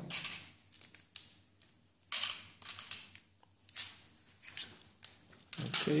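Small plastic game pieces and number cubes being picked up and set down on a laminated mat: a series of sharp clicks and clatters about a second apart, with a longer clattering shuffle about two seconds in.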